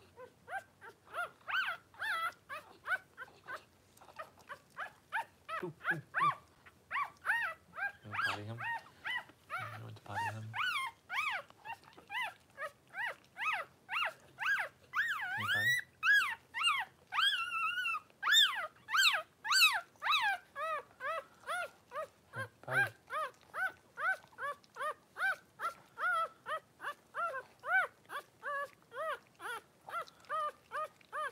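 Newborn Cavalier King Charles Spaniel puppy crying in a steady run of short, high squeals, about two a second, louder and shriller near the middle, with a few dull bumps.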